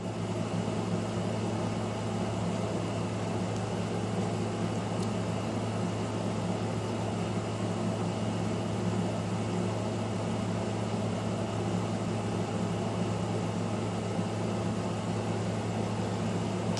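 A steady low hum with an even hiss over it, unchanging throughout, like a fan or air conditioner running in a small room.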